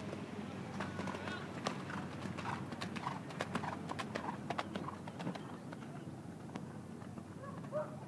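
A horse cantering past close by on the arena's dirt footing, a quick irregular run of hoofbeats that is loudest in the middle and fades as the horse moves away. Faint voices are heard briefly.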